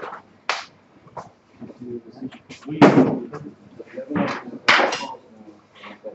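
Short, scattered bursts of voice and a few light knocks in a table tennis hall between points, with no rally being played.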